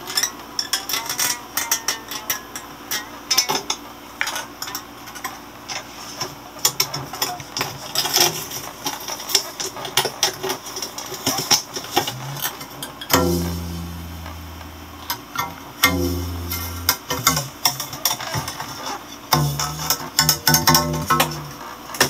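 Homemade electric string instrument, strings stretched over a wooden board and amplified, being plucked and strummed in quick scratchy, clicking notes. In the second half, low steady buzzing tones cut in and out abruptly three times.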